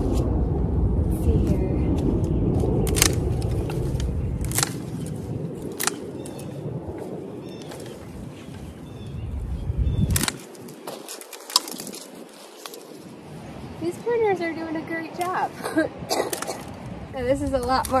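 Long-handled loppers cutting through woody hydrangea stems: a few separate sharp snaps spread out over the seconds, with a low rumble in the first few seconds.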